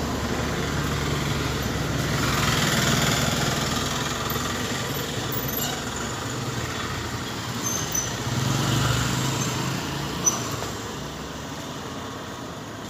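Small pickup truck driving on a road: a steady engine hum with road noise, swelling louder about two seconds in and again around eight seconds.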